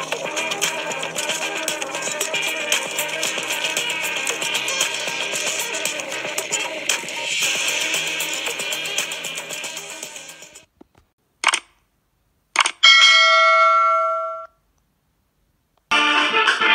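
Logo-intro music with a dense, even texture, fading out about ten and a half seconds in. It is followed by two short sharp hits about a second apart and a bright chime of several tones that rings for about a second and a half, then cuts off.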